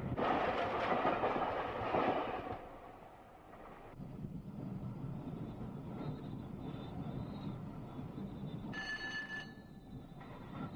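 Electric train coasting at about 45 mph with power shut off, heard from the driver's cab: a rushing noise for the first couple of seconds, then a steady low rumble of wheels on rail. A brief high-pitched tone sounds about nine seconds in.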